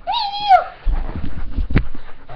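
Dog's short high-pitched yowl, held level and then dropping in pitch, followed by low bumps and a sharp knock.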